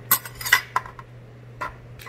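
Metal cutlery clinking against a plate as food is picked up: a few sharp clinks, the loudest in the first half-second, over a low steady hum.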